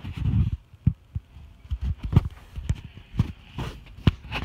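Handling noise from a phone being moved about: a string of irregular soft low thumps with rubbing between them.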